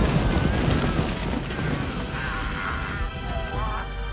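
A large explosion rumbling under dramatic film score music, the blast loudest in the first second.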